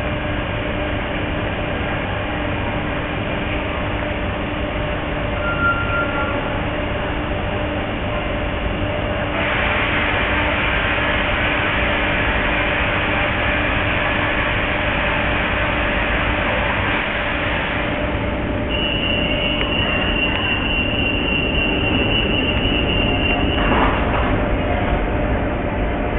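Renfe Class 447 electric multiple unit running slowly through an underground station, heard from the cab: steady running noise with a low hum. A hiss starts suddenly about nine seconds in and stops about eighteen seconds in, and a high steady squeal takes over for the last five seconds.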